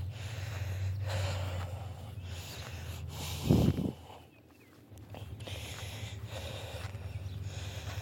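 A person breathing heavily while walking, close to the microphone, in a repeating in-and-out rhythm of about one breath a second. A short, louder snort-like burst comes about three and a half seconds in, followed by a brief lull.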